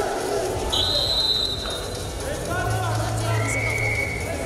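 Wrestling arena noise with voices shouting, cut by a referee's whistle: one high steady blast about a second in as the bout restarts, then a second, lower whistle tone near the end.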